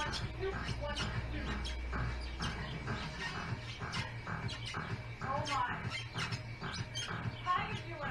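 Music with a steady beat, about two beats a second. Short warbling high notes come in about five seconds in and again near the end.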